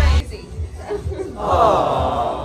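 Hip-hop background music cuts off just after the start, giving way to people's voices in a room, with one louder, drawn-out voice coming in past the middle.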